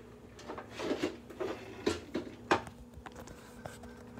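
Hard plastic Road Rippers Hummer H2 toy truck being handled and turned over, giving a few light knocks and clicks, the two loudest about two seconds in and half a second apart.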